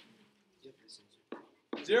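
A short near-silent pause with a few faint, soft short sounds, then a man's voice begins speaking near the end.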